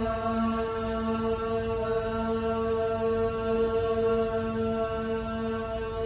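Chanting meditation music: a steady drone held on one pitch, with a lower tone that swells and fades.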